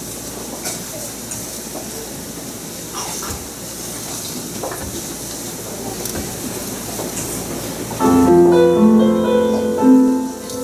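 Faint room murmur and small rustles and clicks from a waiting congregation, then about eight seconds in a piano starts playing sustained chords, the introduction for a children's choir song.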